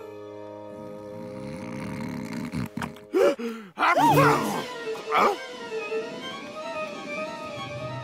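Cartoon background music with long held notes. Around the middle, a character makes three short wordless vocal sounds over it.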